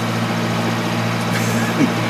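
Engine running steadily at a constant speed: a low, even drone with a steady hum.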